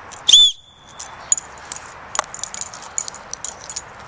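One short, shrill blast on a small black plastic keychain whistle, about a third of a second in, its pitch rising and then falling.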